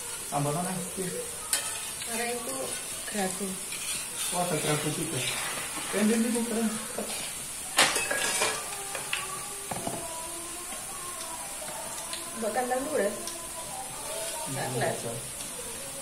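Peyek frying in a wok of hot oil, sizzling with a steady high hiss, while a metal spatula stirs and scrapes against the wok. A utensil knocks sharply on the wok once, about eight seconds in.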